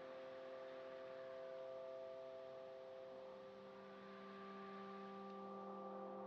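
Soft ambient music of long, held tones layered into a slow drone chord over a faint hiss; about three seconds in some upper tones fade out and a lower tone comes in.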